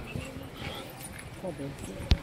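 Indistinct voices of people talking in the background, with short bits of pitched vocal sound.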